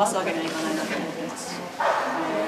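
A woman speaking Japanese in an interview.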